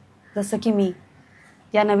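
Speech only: a woman speaking Marathi in two short phrases with brief pauses around them.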